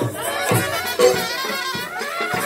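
Live traditional Indian music: drum strokes about twice a second under a wavering pitched melody line.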